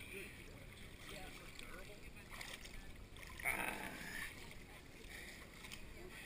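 Faint swimming-pool water lapping and sloshing around a camera at the waterline, with a brief louder rush of water about three and a half seconds in. Distant voices are faintly heard.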